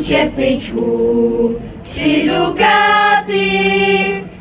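Choir of women and children singing unaccompanied. The phrase breaks off briefly about halfway through, then comes back with long held notes.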